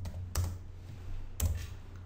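Three keystrokes on a computer keyboard, the third about a second after the second: typing a short terminal command and pressing Enter.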